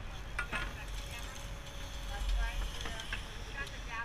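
Low steady rumble of a moving sport-fishing boat out on open water, with faint distant voices and a few light clicks from the tackle on deck.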